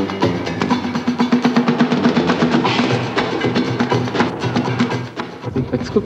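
Fast percussion music played on instruments built from scrap: quick mallet strikes on a rack of pitched pipes over a steady beat. The music changes just before the end.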